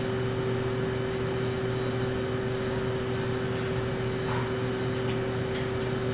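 Steady mechanical background hum holding a few fixed tones, with a couple of faint light clicks about four and five seconds in.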